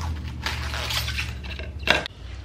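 Plastic cling wrap crinkling as it is pulled and pressed around a steel bowl, followed by a single sharp knock near the end as the wrap roll is put down on the granite counter.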